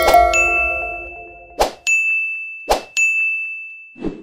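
Animated end-screen sound effects: a chord fading out, then a bright, high notification-style ding rung three times, the second and third each just after a sharp click.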